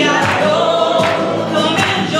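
A woman singing a long held note in a folk song, accompanied by her own strummed acoustic guitar.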